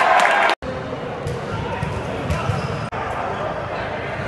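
Indoor futsal game sounds: the ball knocking and bouncing on the court amid players' voices. The sound cuts off abruptly about half a second in, then resumes, as one game clip gives way to another.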